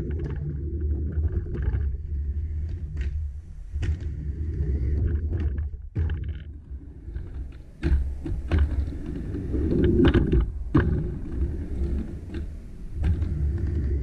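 Skateboard wheels rolling across a wooden mini ramp, a low, swelling rumble, with sharp clacks and knocks as the board and trucks strike the ramp and its metal coping. It is loudest about ten seconds in.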